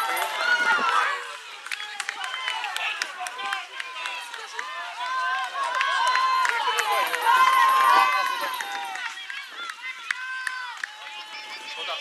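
Sideline spectators and young players shouting and calling out over one another during play, in many overlapping high voices. The shouting is loudest in the first second and again about seven to eight seconds in, then dies down.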